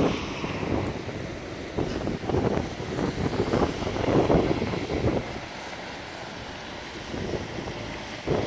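Wind buffeting the microphone over outdoor street noise. It swells several times in the first five seconds, then settles steadier and quieter.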